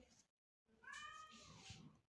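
Faint, brief high-pitched cry about a second in, rising and then falling in pitch.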